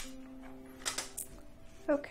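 Faint singing voice from outside, held notes coming through the room, with a few brief rustles about a second in.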